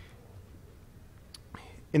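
Low room tone during a pause in a man's talk, with one short faint click a little past halfway; his voice starts again right at the end.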